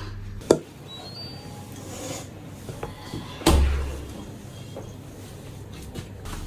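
Kitchen handling noise: a sharp click about half a second in, then a louder knock with a dull low thud about three and a half seconds in, with faint clatter between.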